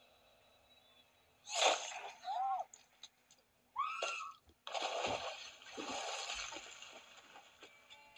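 Film soundtrack played through laptop speakers. Two brief voice sounds with curving pitch come first, then a rushing, splash-like noise of water that lasts about three seconds and fades.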